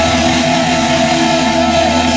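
Power metal band playing live at full volume, heard from the crowd: distorted electric guitars and keyboards holding long notes over the band.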